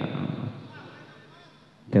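A voice over the PA system trails off into a lull of faint background voices. A loud voice starts again just before the end.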